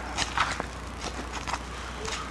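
Paper pages rustling as sheets in a binder are leafed through: a handful of short crinkles over a steady low hum.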